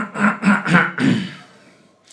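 A man clearing his throat: a quick run of four or five short vocal sounds in about the first second, then it dies away.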